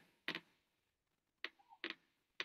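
Near silence broken by three short faint clicks, one just after the start and two close together near the end.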